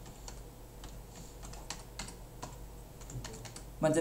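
Computer keyboard keys tapped in an irregular run of short clicks while a sum is keyed into a calculator, with a faint low hum underneath.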